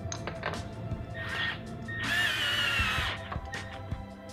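Cordless drill with a hex bit driving a mounting screw into a light fixture's slip fitter base: the motor whines for about a second, starting about two seconds in, its pitch sagging slightly as it runs. Background music plays throughout.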